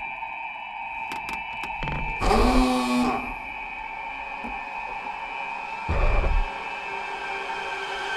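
Tense horror-trailer score and sound design: a steady high-pitched drone, a few faint clicks about a second in, a swell with a gliding tone a little after two seconds, and a short low thud about six seconds in.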